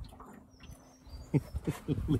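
A man laughing in short breathy bursts, starting about a second and a half in, after a stretch of quiet.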